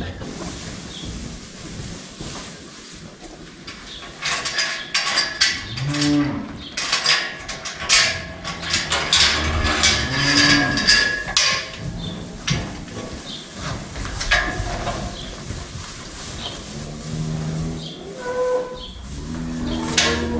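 Holstein heifers mooing several times, low drawn-out calls. Sharp knocks and clatter come in a busy stretch before the middle.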